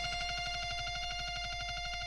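Punk record playing on a turntable at the close of a song: the band has stopped and a single held note rings on alone with a fast, even tremolo pulse.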